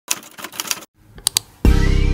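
Typing sound effect: a quick run of key clicks as a title is typed out, a short pause, then three more clicks. About one and a half seconds in, a loud sustained musical chord comes in.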